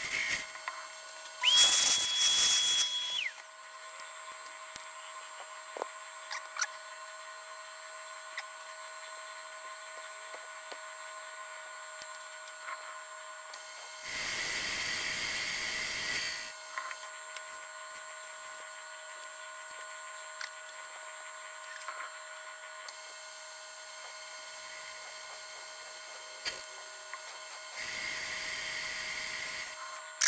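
Metal lathe running steadily while a boring bar cuts the inside of a flywheel. Three hissy cutting bursts of about two seconds each stand out over the machine's hum, the first with a high, steady whistling squeal.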